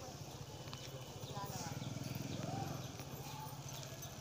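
Faint outdoor street ambience: a steady low rumble with a rapid, even pulsing, and faint distant voices.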